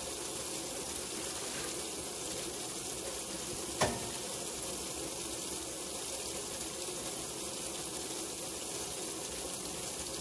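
Water pouring steadily from the fill spout into the tub of a 1960 AMC Kelvinator W70M top-loading washer as it fills for the wash. A single sharp click about four seconds in.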